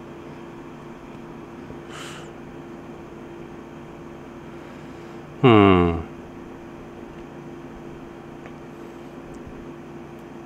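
Steady air-conditioner hum in a small room. About halfway through, a man's short hummed 'hmm' falls in pitch over half a second and is the loudest sound.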